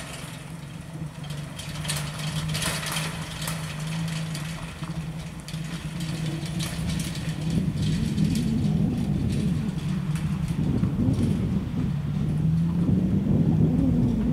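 Jeep Wrangler towing a small utility trailer, its engine running in a steady low drone as it drives off. The drone grows louder in the second half, with scattered light clicks in the first half.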